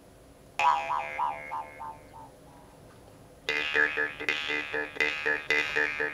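Metal Altai jaw harp (vargan) by Vladimir Potkin being plucked: a single twang about half a second in rings on over a drone while its overtones shift, then dies away. After a short pause, rhythmic plucking starts, about four plucks a second, with the overtones moving in a melody over the steady drone.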